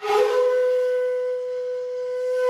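Background music: a flute comes in suddenly and holds one long, breathy note.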